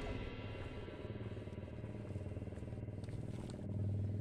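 A faint, steady low engine hum, growing a little louder near the end.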